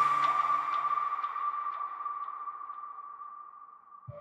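Deep house music at a break: a single held synth tone fades slowly away, with faint echoing ticks about twice a second dying out beneath it.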